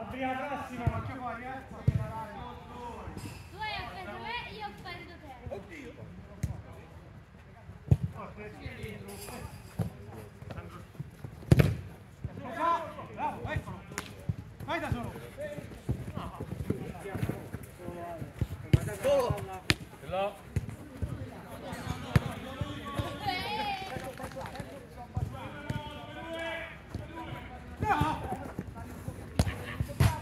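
A football being kicked and bouncing on an artificial-turf pitch, heard as a string of sharp thuds. The hardest one comes about eleven and a half seconds in. Players call and shout to each other throughout.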